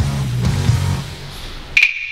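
Rock music soundtrack, cut off near the end by a single sharp chime whose bright tone rings on and fades: a logo sting.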